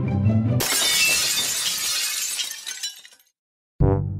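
Intro music breaks off about half a second in with a sudden crash sound effect that fades out over about two and a half seconds. After a brief silence, brass music starts near the end.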